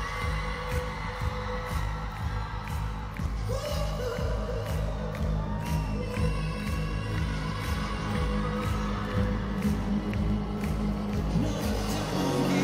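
Live band playing a pop-rock song over an arena PA with a steady heavy beat, with some singing and the crowd cheering.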